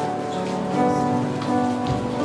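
Live worship band playing a slow, quiet instrumental: acoustic guitars strummed over held keyboard chords.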